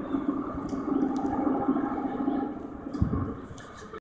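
A short freight train led by two EMD GP38-2 locomotives rolling away, a steady rushing rumble that fades near the end. A brief low thump about three seconds in.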